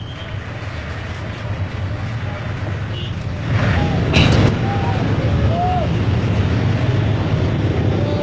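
Congested city street traffic: a steady low rumble of bus and car engines that grows louder about halfway through, with a short burst of noise near the middle as the loudest moment.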